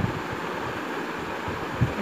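Chicken pieces and ginger-garlic paste sizzling steadily in an open pressure cooker on the stove, with two soft low thumps, one at the start and one near the end.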